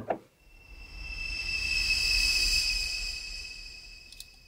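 A bowed mandolin sample played through the Krotos Concept 2 synthesizer: one sustained, high, thin note that swells in about half a second in and fades away toward the end, over a low rumble.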